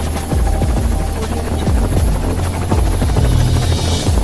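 Helicopter rotor blades beating steadily in a helicopter sound effect, with music underneath.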